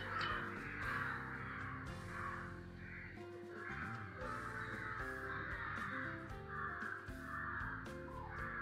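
Quiet background music with a steady run of short, harsh bird calls repeating about every half second.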